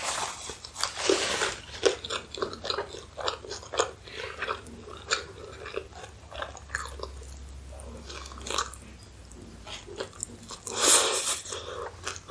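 Close-miked chewing of a loaded hot dog, with wet mouth clicks and small crunches, then a loud crunchy bite about eleven seconds in.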